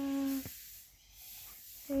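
A child chanting "here you go" in a singsong voice. The voice breaks off about half a second in, leaving a faint hiss, and starts again near the end.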